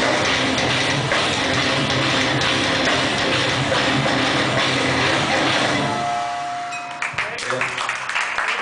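A live metalcore band with distorted electric guitars and drum kit plays loud until the song ends about six seconds in. A held tone rings for under a second, then scattered audience clapping starts near the end.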